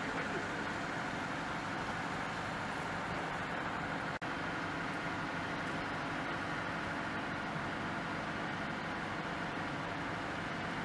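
Steady drone of an idling truck engine, broken by a momentary dropout about four seconds in.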